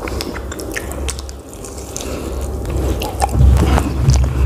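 Close-miked chewing of tandoori chicken, with many short wet mouth clicks and smacks, growing louder about three seconds in.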